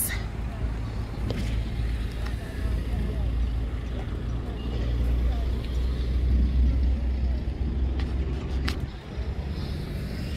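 Road traffic: cars passing, heard as a steady low rumble that swells in the middle and drops away about nine seconds in.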